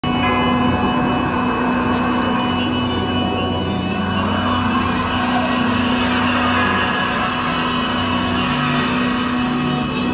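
Parade music playing steadily, with many sustained tones throughout.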